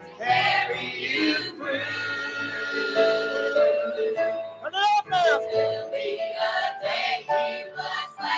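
A mixed choir of children and adults singing a gospel song through microphones, with long held notes in the melody.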